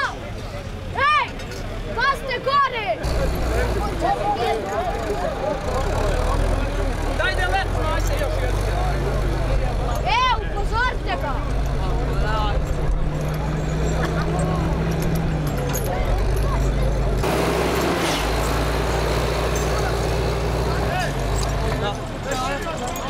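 Spectators laughing and talking for the first few seconds. Then a wheeled forestry skidder's diesel engine runs steadily under load as it drags a log, with voices from the crowd over it.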